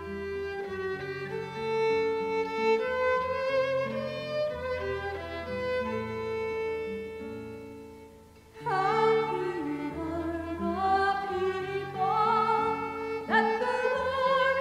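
Violin and acoustic guitar play an instrumental introduction. A dip comes at about eight seconds, then a woman's voice starts singing with vibrato over the violin and guitar.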